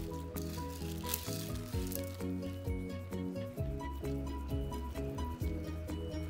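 Background music with a steady bass and a melody of short, stepping notes.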